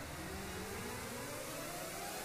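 A whine rising steadily in pitch, several overtones climbing together, as a sound effect on the anime episode's soundtrack.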